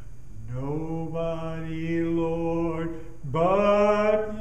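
A man singing solo in a slow, drawn-out line. His voice slides up from low into a long held note, breaks briefly about three seconds in, then slides up into a louder next note.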